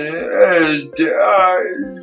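A man's voice making two drawn-out, speech-like vocal sounds, each just under a second long, not carried as clear words. This is typical of speech affected by cerebral palsy. Under it, background guitar music plays with a steady plucked beat of about four notes a second.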